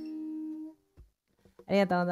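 The final strummed chord of an acoustic guitar rings and fades out within the first second, followed by a short soft thump. Near the end a woman's voice begins.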